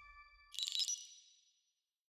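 Logo sting of an animation studio: the last ringing tones of a short jingle fade out, then a bright, high chime-like ding sounds about half a second in and rings away within a second.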